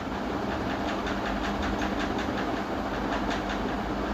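Steady background machine noise with a fast, faint clicking rhythm running throughout.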